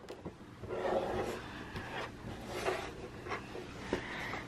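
Faint handling noise: soft rustles and a few light taps as a small plastic remote control and toy are handled and set down on a tabletop.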